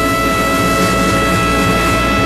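A live jazz quintet (trumpet, tenor saxophone, piano, bass and drums) holding one long sustained chord at the close of a tune, the horns' notes steady over a wash of cymbals.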